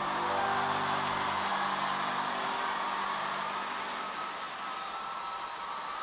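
Held notes of a ballad's accompaniment die away in the first second or two, leaving a steady, even wash of hiss-like noise with one faint held tone that slowly grows quieter.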